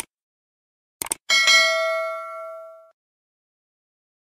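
Subscribe-button sound effect: a short click at the start, a quick double mouse click about a second in, then a bell-like notification ding that rings out and fades over about a second and a half.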